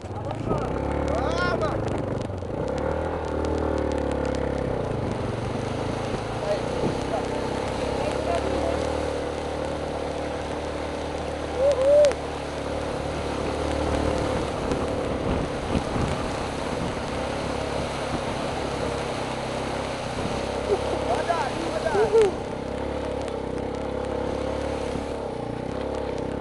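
Motorcycle engine pulling away, rising in pitch over the first two seconds, then running at a steady throttle under load while towing a rider on a board across shallow water, over a steady rushing noise.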